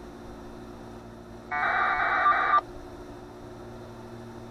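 A 2 m packet radio data burst, the warbling two-tone buzz of 1200-baud AFSK, from an Icom VHF mobile transceiver's speaker. It is one burst about a second long, starting a little over a second in, over a faint steady hum, as the Winlink station connects and exchanges messages with the gateway.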